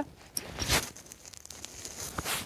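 A brief rustle, about two-thirds of a second in, after a couple of faint ticks: handling and clothing movement while crouched.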